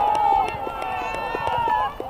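Children's high-pitched shouts and calls from young football players, one call held and bending for about two seconds, over short scattered taps.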